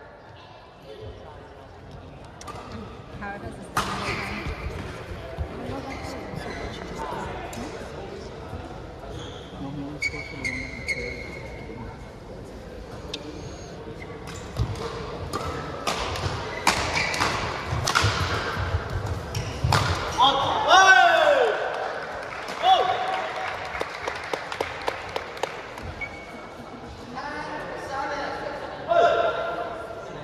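Badminton rally in a large, echoing hall: sharp cracks of rackets striking the shuttlecock and short squeaks of shoes on the court floor, with a crowd talking. The hits come thickest in the middle, and a loud falling squeal follows shortly after.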